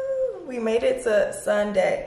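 A held sung note that ends just after the start, then a woman's voice from about half a second in, speaking in a high, gliding, sing-song way.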